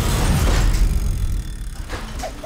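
A corrugated metal roller shutter rumbling and rattling as it rolls, fading away, with a sharp knock near the end.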